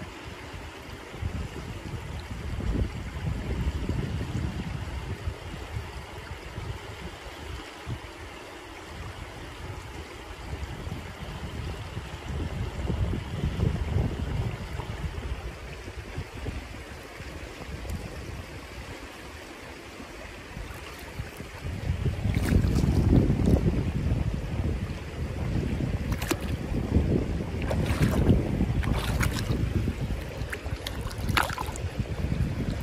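Shallow river water running over stones, with gusts of wind buffeting the microphone in uneven low rumbles. The wind grows stronger about two-thirds of the way through, and a few sharp splashes come near the end as a hand reaches into the water.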